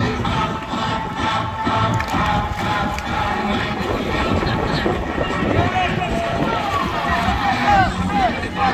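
Upbeat dance music playing over a crowd of voices. About halfway through, the music falls back and excited shouts and calls from the crowd take over, each rising and falling in pitch.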